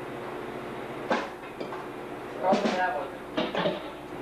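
A pause between songs: a low, steady electrical hum runs under a sharp knock about a second in and brief indistinct talk in the room.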